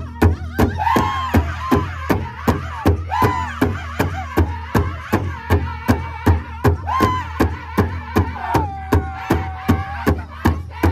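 A powwow drum group singing around one large drum: the sticks strike the drum together about three times a second while the singers' voices run through falling and rising phrases, with one long held note near the end.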